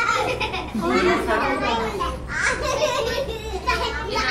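Several children and adults talking and calling out over one another.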